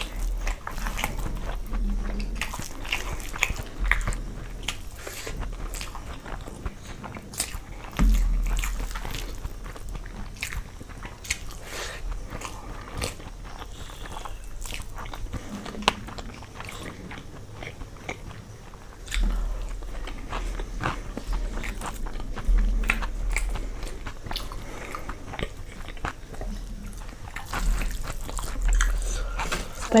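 Close-miked chewing and biting of spicy khichdi and gobi pakoda (battered cauliflower fritters) eaten by hand: many small wet clicks and crunches, with a few low thumps.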